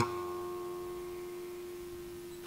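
A single electric guitar note left ringing between phrases, one held tone that fades slowly and stays quiet.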